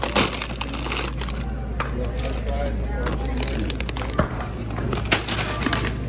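Plastic bags of frozen broccoli crinkling and crackling as they are handled, in short irregular bursts over a steady low hum.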